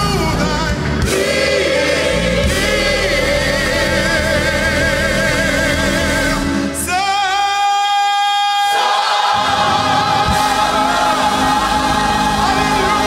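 Gospel choir singing with a male soloist leading on a microphone. About seven seconds in, the low accompaniment drops away under one long held high note for about two seconds, then the full choir sound comes back in.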